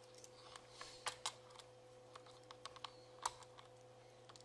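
Faint, irregular small clicks and taps of jumper-wire connectors and a small display board being handled and plugged onto header pins, over a faint steady electrical hum.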